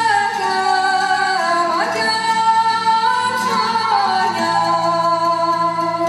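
A woman singing a Moldavian Csángó Hungarian folk song, the melody sliding between held notes with ornamented turns, over low sustained accompanying notes.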